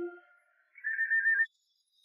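The last notes of the background score fade out at the start. About a second in comes a short, loud trilled whistle, a single high warbling tone lasting under a second that cuts off suddenly, most likely a comic sound effect in the soundtrack.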